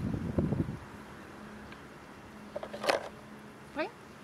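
Rustling and knocking as a small dog handles plastic sand toys at a plastic bucket, then one sharp click about three seconds in. Short rising chirps follow near the end.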